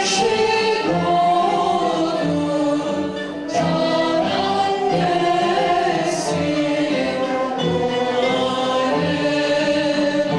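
Live Turkish Sufi (tasavvuf) music: sung vocals, more than one voice, over a small ensemble of keyboard and plucked strings, playing continuously.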